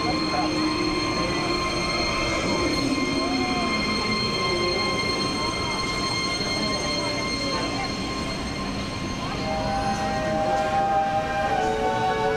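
A steady hum of several held tones over a crowd's murmur, with music starting near the end.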